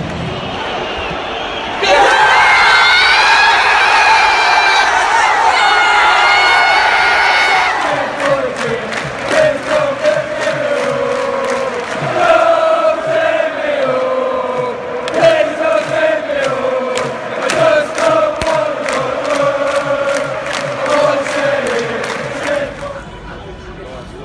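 Large football stadium crowd of England supporters singing and chanting in unison, getting much louder about two seconds in. Through most of the chant it runs over steady rhythmic claps, and it fades near the end.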